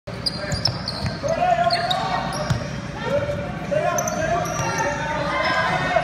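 Basketball game on a hardwood gym floor: the ball bouncing a few times and brief high sneaker squeaks, with players' and spectators' voices calling out over them in the echoing hall.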